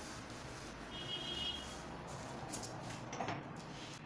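Quiet handling sounds of pattern drafting: a felt-tip marker drawn along a metal ruler on brown pattern paper, with a short high squeak about a second in, then a few light clicks and paper rustles as the ruler is set down.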